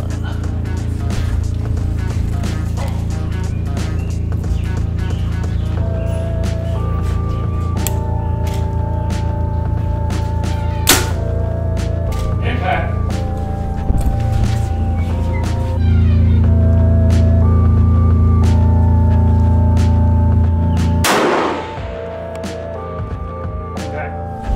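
Background music with a strong, steady bass and repeating melodic notes. A sharp crack cuts through about eleven seconds in, and a louder bang comes near twenty-one seconds, after which the music drops to a lower level.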